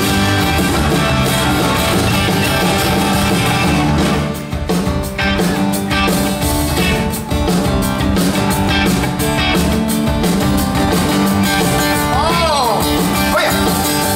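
Live rock music: acoustic guitars strummed over a backing band, playing steadily and loud.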